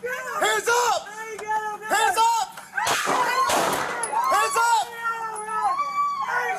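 Frantic, high-pitched screaming and yelling, picked up by a police body camera. About three seconds in, a sharp bang and a short burst of noise cut through it: a pistol shot fired at close range into a van.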